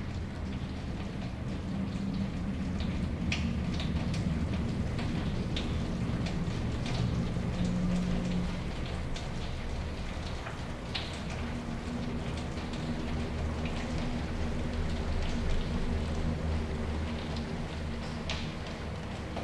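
Steady rain-like noise with a low rumble underneath and scattered small ticks like drops. It runs evenly without a break.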